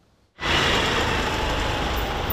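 Steady rushing outdoor background noise that starts abruptly about half a second in.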